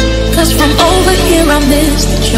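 Music with steady deep bass and held chords; a wavering melody line comes in about half a second in.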